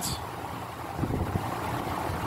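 Steady low background rumble with no distinct event, typical of wind buffeting the microphone.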